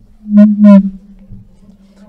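A man's two loud, wavering vocal cries through a microphone, an imitation of a person manifesting an evil spirit, over a steady low hum.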